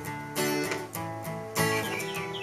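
Gibson acoustic guitar strummed in a country song, held chords ringing with several fresh strums across the two seconds.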